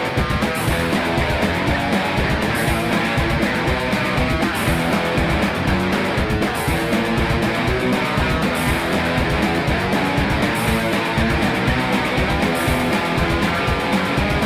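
Guitar-led rock music playing steadily, with no sung words.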